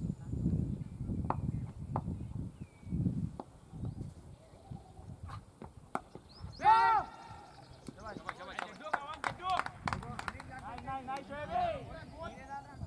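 Outdoor cricket field: wind rumbling on the microphone in the first few seconds, scattered faint knocks, then one loud short shout from a player about seven seconds in, just after the batsman plays a shot, followed by more distant calls and voices.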